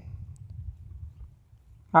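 Faint low background rumble in a pause between spoken lines, fading to near silence about three-quarters of the way through.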